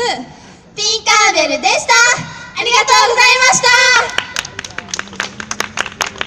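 Two young women's voices calling out together into microphones in a high, drawn-out sing-song, then scattered clapping from a small audience starting about four seconds in.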